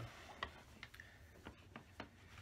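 A few faint, irregularly spaced light clicks and ticks as clothing is handled and set aside.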